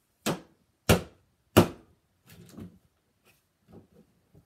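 Plastic wrestling action figures knocked against a toy wrestling ring's mat: three sharp knocks about two-thirds of a second apart, then softer clattering and a faint knock near the end.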